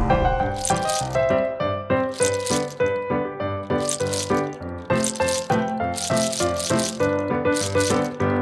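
Candy-coated chocolates clattering in about six short bursts as hands dig through a pile of them, over background keyboard music.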